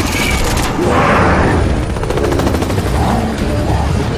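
Film sound mix of rapid machine-gun fire, densest in the first second, over the deep rumble of helicopters.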